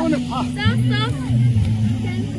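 Several voices calling, their pitch rising and falling, over a steady low hum.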